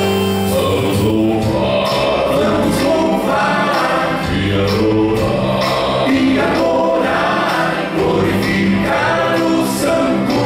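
Male vocal quartet singing a gospel hymn together into microphones, amplified through the hall's speakers.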